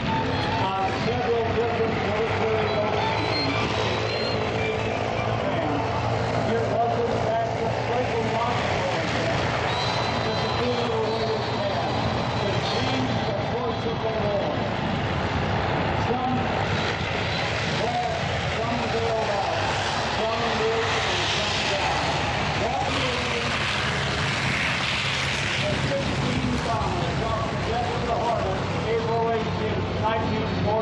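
Piston engines of World War II fighter planes flying over an air show, a steady drone that grows louder about twenty seconds in as a plane passes. Indistinct voices run underneath.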